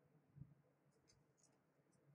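Very faint crinkling of folded origami paper as the crane is handled between the fingers: a few soft, brief crackles, with one low soft bump about half a second in.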